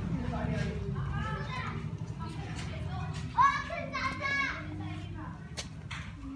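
Children's voices chattering and calling, with one loud high-pitched child's call about three and a half seconds in, over a low background rumble.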